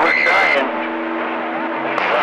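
CB radio receiver on channel 28 (27.285 MHz) passing skip-band audio: a noisy, static-laden signal carrying a steady high tone that stops about half a second in. After that, a duller signal with a low steady hum and faint, garbled voices underneath.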